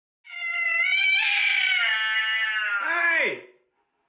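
Domestic cat yowling at its own reflection in a mirror: one long, drawn-out call that drops sharply in pitch at the end.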